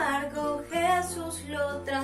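A woman singing a Spanish-language children's Christian song over a guitar accompaniment, the bass notes of the accompaniment changing about three quarters of a second in.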